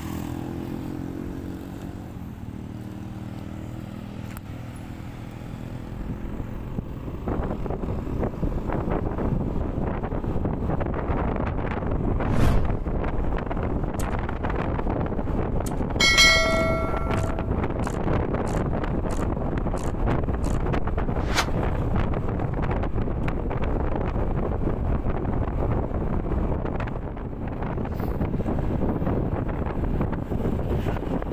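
Yamaha NMAX scooter's single-cylinder engine running at low speed in traffic. After about six seconds it is increasingly covered by wind noise on the helmet-mounted microphone as the scooter speeds up. A short bell-like chime sounds about halfway through, the sound effect of an on-screen subscribe animation.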